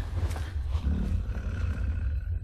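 A beast's deep growling roar, the werewolf creature sound of a monster-movie trailer, over a heavy low rumble.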